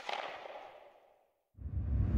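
A whoosh-and-hit sound effect for an animated title, its tail fading away over about a second. After a short silence, music starts near the end.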